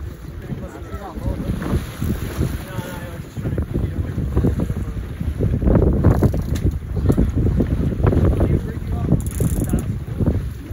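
Wind buffeting a phone microphone aboard a boat at sea: a loud, uneven rumble that grows stronger about halfway through.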